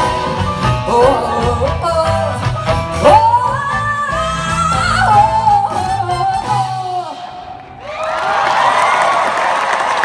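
Live jazz-band music with a female lead vocalist finishing a song, her voice climbing into a long held note over piano, upright bass, drums and horns. The band stops about seven seconds in, and about a second later a large audience cheers and applauds.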